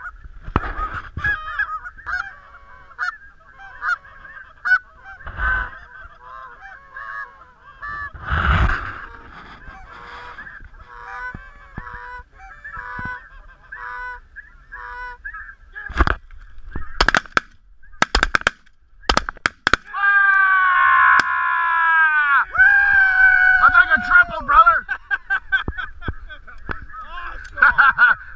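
A flock of snow geese honks over and over, with many calls overlapping. About sixteen seconds in comes a quick run of sharp cracks, shotgun shots at the birds, and after that the calls are louder, with long falling honks.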